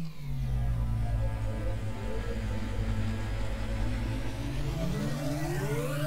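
Cinematic transition sound design for an animated title card: a deep, steady drone with a low pitched hum, opening with a falling tone and ending with a tone that sweeps upward over the last second or so.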